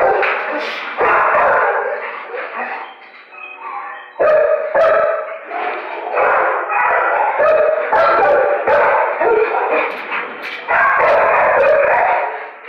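Many dogs barking and yipping at once in a shelter kennel block, a loud, continuous overlapping din that eases briefly about three seconds in and then picks up again.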